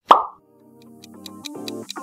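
A single short cartoon plop sound effect with a quickly falling pitch, then background music fading in with a quick ticking beat.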